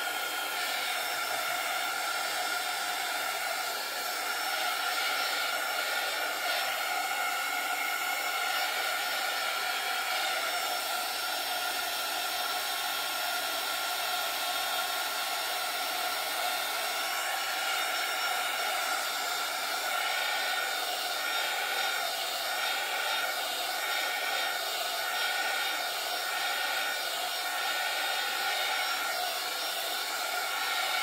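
Small handheld craft heat-tool dryer blowing steadily over wet acrylic paint: a constant rush of air with a steady motor whine.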